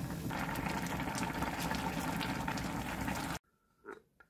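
Stew bubbling at a rolling boil in an aluminium pot as a wooden spoon stirs through it, with a steady seething and crackle of bursting bubbles. It cuts off suddenly about three and a half seconds in, leaving a faint tap near the end.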